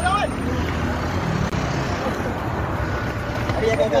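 Steady low rumble of a Range Rover SUV's engine idling close by, with scattered voices of people around it.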